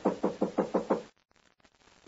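Knuckles knocking on a wooden door, a radio-drama sound effect: a quick run of about six raps within the first second.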